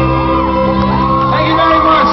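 Live band music, electric guitar and violin over sustained notes, with audience members whooping and shouting over it.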